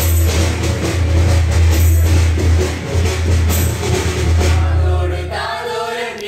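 A choir of mixed voices singing a Christmas carol over loud, bass-heavy accompaniment with steady drumming. About five seconds in, the bass and drums drop away, leaving the voices singing almost unaccompanied.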